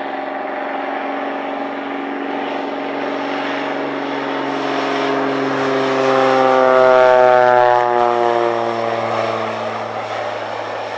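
Single-engine crop-duster airplane making a low pass: the engine and propeller drone grows louder, peaks about seven seconds in, and drops in pitch as the plane goes by.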